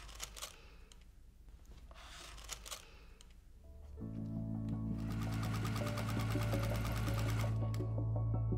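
Brief rustles of rickrack and fabric being laid out and pinned, then from about four seconds in background music with sustained low notes. Under the music, a domestic sewing machine with a walking foot stitches rapidly for a couple of seconds, attaching the rickrack.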